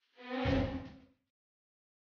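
A dramatic sound-effect hit of the kind cut into TV serial reaction shots: a pitched tone over a low rumble, about a second long, swelling and then fading out.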